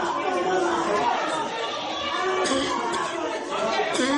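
Several people's voices talking over one another at once, an indistinct jumble of chatter echoing in a building hallway, heard through a phone recording.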